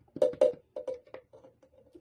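Spoon clinking and tapping against a glass jar as a spoonful of Vaseline is knocked off into it. Several sharp clinks with a brief ring, louder in the first second and fainter after.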